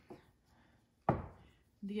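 A single sharp knock on a hard surface about halfway through, fading quickly.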